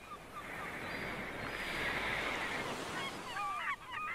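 Surf and wind noise swelling in, with a quick flurry of bird calls in the last second.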